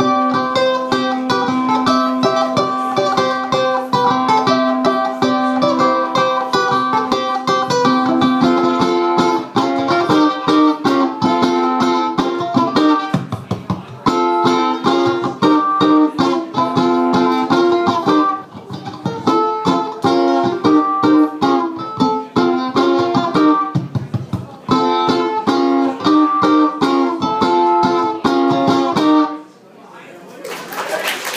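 A ukulele playing a picked instrumental melody, a held low note sounding under it for the first third, with a few brief breaks before the tune stops near the end.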